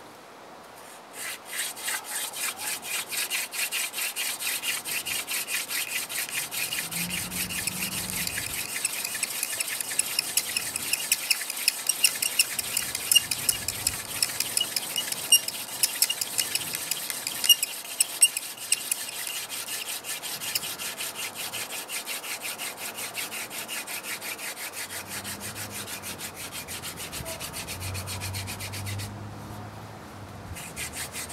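Hand-drill fire set: a mullein plug spinning back and forth in a notch of a willow hearth board, making a fast, rhythmic dry rubbing that starts about a second in and stops just before the end. Sharp squeaks cut through the rubbing for a stretch in the middle.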